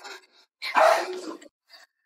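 A person's short, sharp cry, lasting under a second and starting a little over half a second in, as one of them is being struck.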